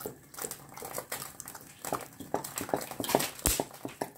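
Cooking oil glugging as it pours from a plastic bottle into a frying pan: an irregular run of short gurgling pops that come faster in the second half.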